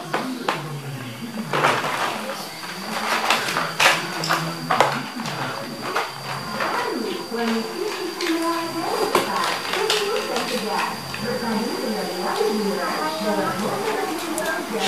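Plastic toys knocking and clattering as a child rummages through a pile of them, with indistinct voices alongside, heard most in the second half.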